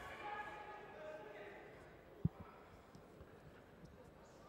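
Voices in a large sports hall for the first two seconds, then one sharp thud a little past halfway and a few fainter knocks as the judoka step in on the tatami and take grips.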